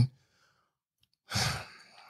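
A man's short, breathy sigh about a second and a half in, following a stretch of silence.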